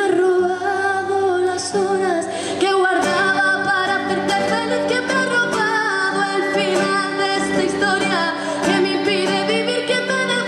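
A woman singing live into a microphone while playing an acoustic guitar, her voice sliding up into the first note and holding long notes with a wavering pitch over the guitar.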